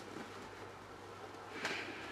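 Faint handling of a cloth tote bag as it is opened out, with a soft fabric swish about one and a half seconds in, over a low steady hum.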